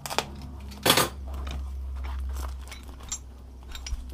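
Foam packing being pulled and rubbed off tools wrapped in it: rustling and scraping, loudest about a second in, with a few small ticks near the end.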